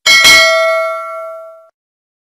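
Bell 'ding' sound effect for a subscribe animation's notification-bell button: a single bright strike that rings and fades out over about a second and a half.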